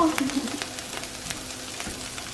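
Cubed pre-cooked potatoes sizzling steadily as they crisp into home fries in a nonstick skillet, with a few light clicks of a spatula stirring them.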